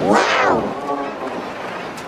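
A man's drawn-out spoken exclamation, warped by stacked pitch-shifting audio effects. It rises and then falls in pitch over the first half second or so and trails off into a fainter, echoing tail.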